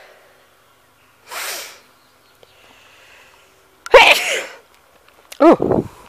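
A person close to the microphone sneezing. Two sharp hissy breaths come first, then a loud sneeze about four seconds in, followed by a shorter vocal sound.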